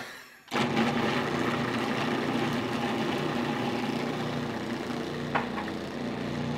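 Electric food processor motor starting up about half a second in and running steadily, its blade chopping a quarter onion fine.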